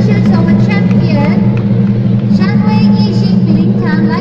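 Lion dance percussion of drum, gong and cymbals playing loudly and without a break, with crowd voices and shouts over it.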